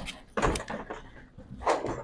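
Bowling alley background noise: two short knocks with clatter, about half a second in and again near the end.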